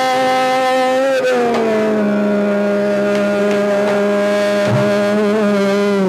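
Male Hindustani khayal vocalist holding a long sung vowel in Raga Multani, gliding down to a lower note about a second in and sustaining it, over a steady tanpura drone.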